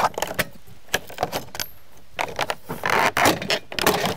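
Vinyl siding panel being pried and unsnapped with a pry bar, the plastic clicking and snapping as it is worked loose. About two seconds in it gives a longer scraping rattle as the piece slides free.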